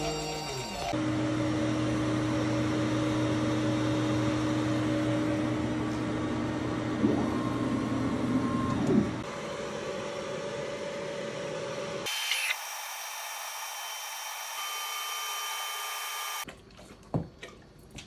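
Laser engraving machine running with its fans: a steady mechanical hum with a low drone. It changes in tone about nine seconds in, a higher steady tone takes over at about twelve seconds, and it stops about sixteen seconds in, leaving a few faint clicks.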